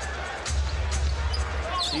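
A basketball dribbled on the hardwood court of an arena, over a steady low rumble of crowd and arena music. A commentator's voice comes in near the end.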